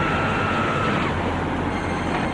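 Steady rumble and hiss of a car on the road, with a high held tone during about the first second.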